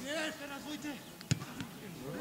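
Distant voices of players and spectators calling across an open football pitch, with one sharp thud of a football being kicked a little past one second in.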